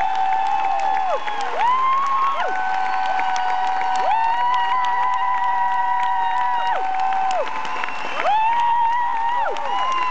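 Arena concert crowd cheering and clapping, with the audience singing long held notes together, each lasting a couple of seconds.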